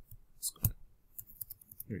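A few light clicks of a computer mouse: one louder click about two-thirds of a second in, then a quick run of fainter clicks shortly before the end.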